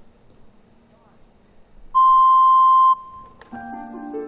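A single electronic beep, one steady high tone lasting about a second, sounds about two seconds in, the start signal ahead of a floor-exercise routine. Soft music with sustained notes begins near the end.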